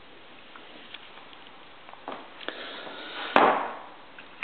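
Handling noise from a TriField meter being moved about, with faint ticks and one sharp click a little over three seconds in.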